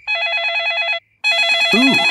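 Mobile phone ringing: two trilling rings of about a second each, with a short pause between them.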